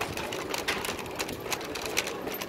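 Plastic shopping cart being pushed over paving, its wheels and frame rattling in a quick, steady clatter.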